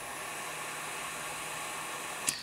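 A lighter's flame hissing steadily while it melts and seals the freshly cut end of the nylon paracord.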